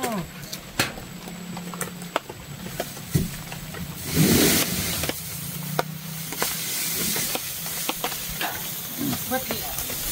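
Outdoor ambience of scattered sharp clicks and crackles over a low hum that comes and goes, with a brief louder rustling burst about four seconds in.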